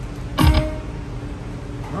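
Slot machine sounds as a $5 spin starts: a steady electronic tone, with one short loud burst about half a second in.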